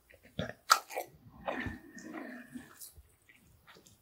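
Close-miked mouth sounds of a person eating sauced noodles: sharp wet clicks and smacks in the first second, a longer slurping, chewing stretch in the middle, and quieter chewing near the end.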